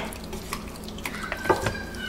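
Hands massaging wet jerk marinade into the skin of a raw whole turkey: soft, irregular wet squishing and slapping, with one sharper knock about halfway through.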